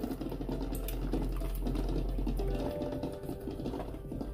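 Minced garlic frying in oil in a stainless steel pot, a steady dense crackle, with faint background music.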